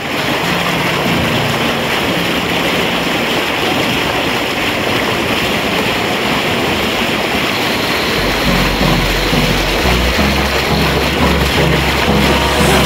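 Stream water rushing and splashing over boulders at a small cascade, a loud steady rush. Music with a bass line comes in underneath about eight seconds in.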